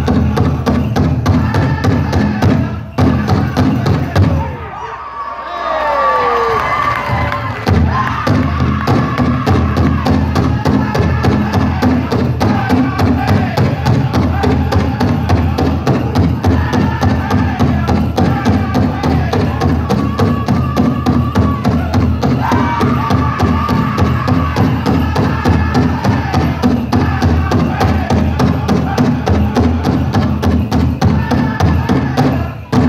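Powwow drum group singing a fancy dance contest song: a fast, steady beat on a big drum with the singers' high voices over it. About three seconds in, the drum stops for several seconds while a voice carries on alone, and the drumbeat comes back in about eight seconds in.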